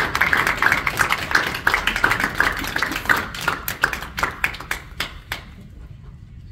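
Audience clapping: a dense patter of hand claps that thins to a few last ones and stops a little over five seconds in.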